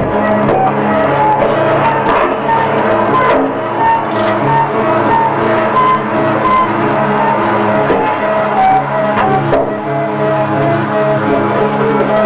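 Loud music playing continuously: a steady stream of held, changing notes with no break.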